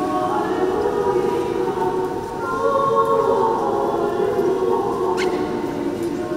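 Church choir singing Orthodox liturgical chant in long, slowly changing held notes.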